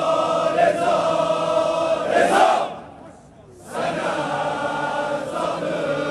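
A crowd of men chanting an Azeri mourning elegy (mersiye) together in unison. It comes in two long held lines with a break of about a second between them, and the first line ends in a louder cry.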